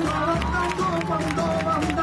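Live flamenco and Japanese traditional fusion music: a wavering melodic line with voice-like bends over steady low sustained tones, punctuated by frequent sharp percussive taps.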